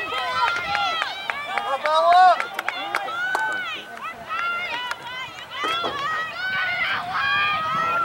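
Several high-pitched voices shouting and calling out over one another on a soccer field, short calls rather than talk, with a few sharp taps in between.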